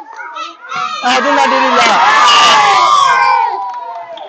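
A crowd shouting and cheering together, breaking out about a second in and dying away near the end.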